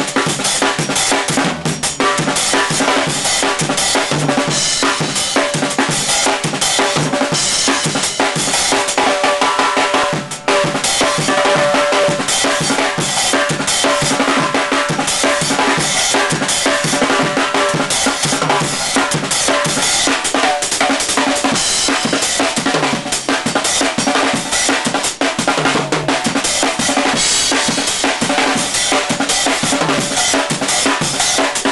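Acoustic drum kit played live in a drum and bass groove: bass drum, snare and rimshots in a dense, unbroken pattern, with a brief break about ten seconds in.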